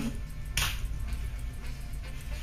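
A single sharp click about half a second in, over a low steady hum.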